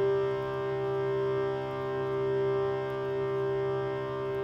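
A shruti box's steady reed drone on two held notes, swelling and easing slightly as the bellows are pumped.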